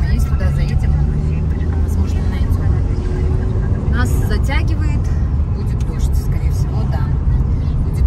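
Car interior noise while driving: a steady low rumble of engine and road. A short burst of a person's voice comes about four seconds in.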